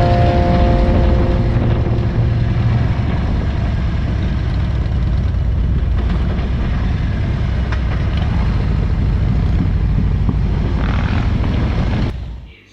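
Motorcycle riding along: a steady low engine rumble under heavy wind rush.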